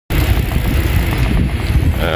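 Loud, steady low rumble of wind buffeting the microphone and road noise from riding along behind the cyclists, with no clear engine note.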